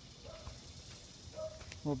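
Quiet outdoor background during a pause in talk, with two short faint calls, then a man's voice starts just before the end.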